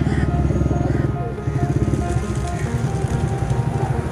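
Motorcycle engine running close by with a rapid, even firing beat.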